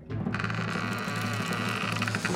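A steady rapid snare drumroll building suspense before a dive, over a low hum.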